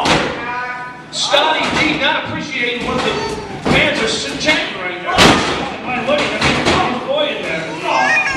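Wrestlers' bodies hitting a wrestling ring's mat: several thuds, the loudest about five seconds in. Voices call out throughout.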